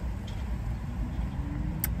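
Low steady rumble of a motor vehicle, with one brief sharp click near the end.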